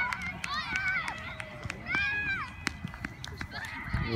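Several high-pitched voices shouting and cheering in drawn-out calls, with a few sharp hand claps scattered among them.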